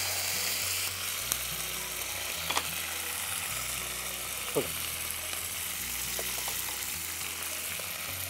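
Fresh mint and coriander leaves frying in hot oil in an aluminium pan, a steady sizzle with a few brief light clicks.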